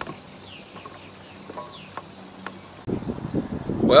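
Quiet open-air ambience with a few faint, short, falling bird chirps. About three seconds in, a fluctuating low rumble of wind buffeting the microphone starts suddenly.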